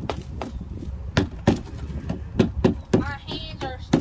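Claw hammer tapping caked, dried mud off a Jeep's plastic mud flap: a quick, irregular run of sharp knocks, knocking the mud loose.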